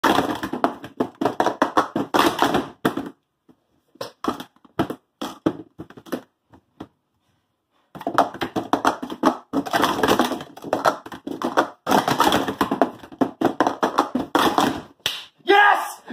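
Plastic speed-stacking cups being stacked up and down at speed on a StackMat, a fast clatter of light clacks. The clatter runs for about three seconds, thins to a few scattered clicks with a short silence, then picks up again about eight seconds in and runs for some seven seconds.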